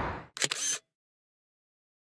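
A single camera shutter click, short and mechanical, just under half a second in.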